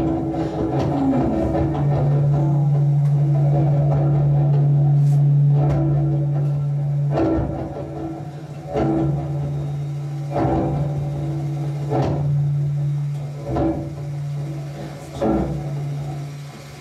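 Amplified cello in a live experimental set: a low note held as a steady drone after a short downward slide near the start, with a sharp hit about every one and a half seconds through the second half.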